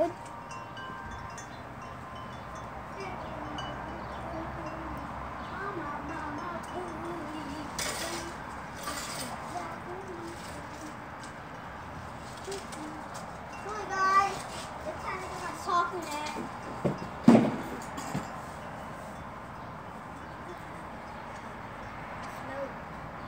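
Steady outdoor hush with faint ringing, chime-like tones, loudest in a cluster about two-thirds of the way through, and a single sharp knock a few seconds before the end.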